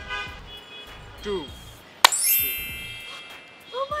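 A sharp hit about halfway through, then a bright ringing chime with a rising sparkle on top that fades over about a second and a half: an edited-in magic-trick sound effect over background music.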